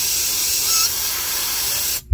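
Master Airbrush dual-action airbrush spraying paint: one loud, steady hiss of air that cuts off abruptly at the end as the trigger is let go.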